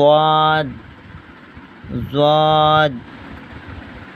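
A voice recites two Arabic letter names from the alphabet chart, ṣād and then ḍād about two seconds later, each drawn out on a steady pitch for under a second. A steady background hum fills the gaps between them.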